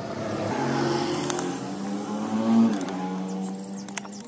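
A passing motor vehicle's engine: a steady hum that grows louder, is loudest about two and a half seconds in, then drops in pitch and fades as it goes by.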